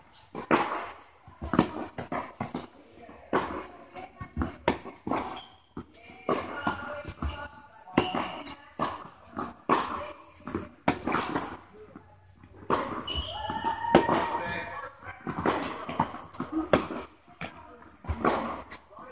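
Tennis rally on an indoor hard court: the ball struck by racquets and bouncing on the court, making repeated sharp knocks about every second.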